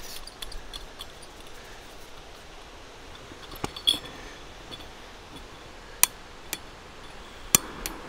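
Light metal and glass clinks as a Primus Easy Light gas lantern is threaded onto its gas canister and set down, then two sharp clicks near the end, a second and a half apart, from its piezo igniter lighting the mantle.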